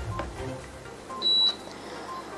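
Quiet electronic beeps: faint short blips and one clear high-pitched beep lasting about a third of a second, about a second in.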